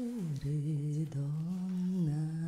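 A voice humming long held notes without words, sliding down from a higher note to a lower one shortly after the start and holding it with a slight waver.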